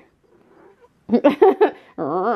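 Domestic tabby cat giving a quick cluster of short meows about a second in, after a near-quiet start.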